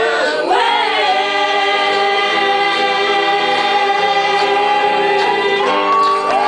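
Live band's closing held note: lead and backing voices singing one long chord in harmony over guitars for about five seconds, shifting pitch just before the end.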